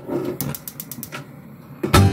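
Gas stove burner being lit: a few sharp clicks over a steady hiss. A louder clack comes just before the end as a frying pan is set on the metal grate.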